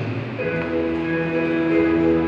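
Church hymn music starting about half a second in with steady held notes, following the tail of a chanted prayer.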